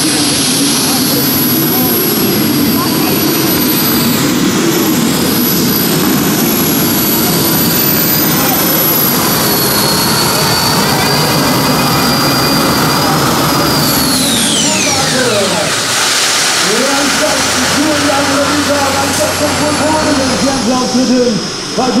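Twin gas-turbine engines of a custom pulling tractor whining steadily at full power through the pull. About fourteen seconds in, the whine drops sharply in pitch as the turbines spool down. A lower engine note follows near the end.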